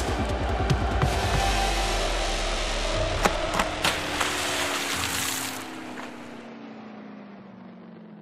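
Sports TV channel ident music: electronic sound design with sharp hits and a rushing swell, then a slowly falling tone that fades away in the second half.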